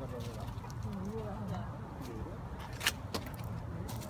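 Faint voices of people talking at a distance over a steady low rumble, with a single sharp click about three seconds in.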